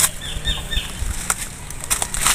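A bird chirping three short high notes, with a few sharp clicks before and after.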